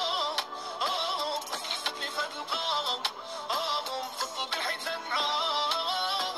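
Arabic-language song: a sung vocal melody over a beat.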